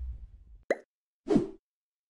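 The tail of a logo sound effect fading out, followed by two short separate blips from the outro's sound design, about half a second apart.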